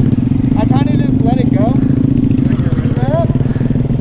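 Honda Grom's 125 cc single-cylinder engine with stock exhaust idling steadily.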